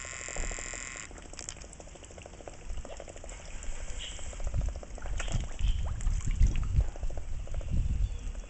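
Water sloshing and slurping at the pond surface as koi gulp and black swans dabble their bills among them, with a run of rapid small clicks early on and low thumps growing louder in the second half.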